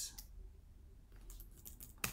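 Light computer keyboard keystrokes: a couple of taps just after the start, a short pause, then a quick run of taps in the last half second as a search entry is typed and selected.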